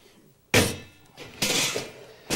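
Metal cooking pot being set down on a kitchen counter: a sharp clunk about half a second in, then a second clatter with a faint metallic ring about a second later.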